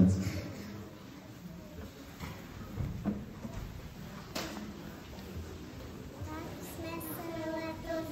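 A hushed pause in a reverberant church hall with low murmuring and rustling, a single sharp knock about four seconds in, then children's voices starting faintly about six seconds in.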